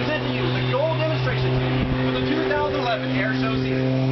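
A steady low drone of a running engine, holding one pitch, with people's voices over it.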